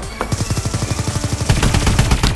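Rapid automatic rifle fire: a fast, unbroken stream of shots that grows louder about one and a half seconds in.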